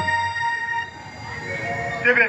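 Loudspeaker stage music ending on a held electronic keyboard chord that fades out about a second in, leaving a quieter stretch of background sound.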